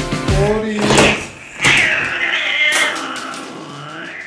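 Background music that stops about a second in, then a single long, high-pitched cat meow.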